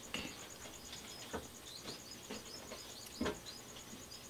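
Faint chirping in the background, with two brief soft knocks.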